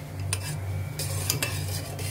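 A spoon stirring milk tea in a stainless steel pot, clinking a few times against the side of the pot.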